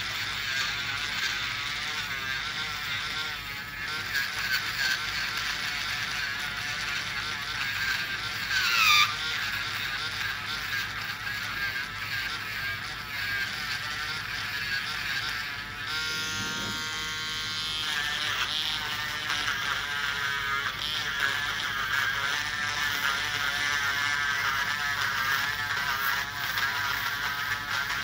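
Podiatry rotary nail drill grinding a thick fungal toenail with a burr: a high buzzing whine that wavers in pitch as the burr bites into the nail. About nine seconds in it dips sharply in pitch and is at its loudest, as the burr bogs down under load.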